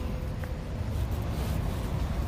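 Steady low rumble of outdoor street noise on a handheld phone microphone, with a faint click about half a second in.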